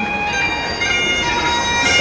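Music from a reedy wind instrument, with several steady notes held together like a drone.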